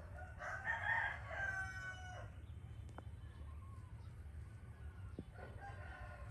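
A rooster crowing once, about two seconds long and ending on a long held note, with a second, fainter crow starting near the end.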